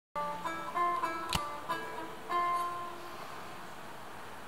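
A short opening phrase of single plucked notes on a small long-necked plucked lute, about eight notes, with one sharp click about a second and a half in. The last note rings out and dies away about three seconds in.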